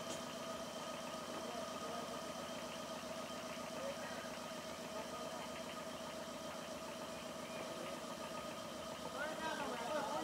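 A small engine idling steadily, with people's voices talking near the end.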